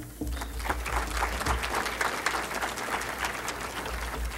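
Audience applauding, many hands clapping at once in a steady patter.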